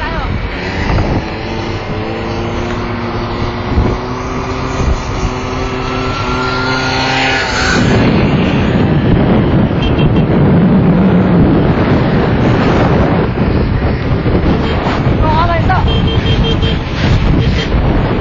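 Motorcycle engine running at a steady road speed, with wind rushing over the microphone. About eight seconds in, the wind noise gets louder and covers the engine's hum.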